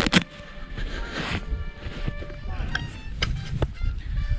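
A cycling glove being pulled off the hand: a sharp click at the start, a burst of rustling about a second in and a few light handling clicks later. Under it runs a steady low rumble of wind on the microphone and faint background music.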